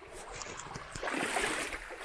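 Shallow creek water running over stones, getting louder about a second in.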